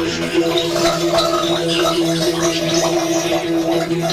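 Experimental sound-collage music: a steady droning note with its overtones, under scattered short, water-like bubbling noises made with bath water and tubes.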